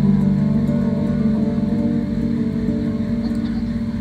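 Guitar playing an instrumental passage between sung lines: sustained low notes under a rapid picked pattern, slowly getting quieter.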